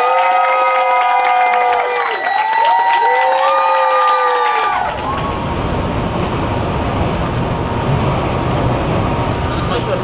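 Two long, held whoops in several voices at once, each rising at the start and falling away at the end, fill the first half. About five seconds in they cut off abruptly and the steady road noise and low rumble of a coach bus heard from inside its cabin takes over.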